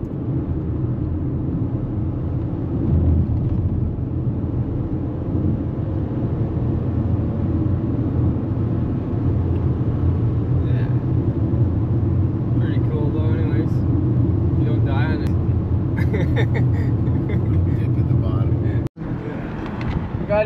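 Steady road and engine noise inside a moving car's cabin, a low rumble of tyres on highway pavement. Faint voices come and go in the second half, and the sound drops out abruptly just before the end.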